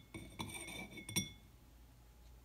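Thick glass jar, cut from a liquor bottle, clinking as it is handled: several clinks that ring with a clear glassy tone, the last and sharpest a little over a second in.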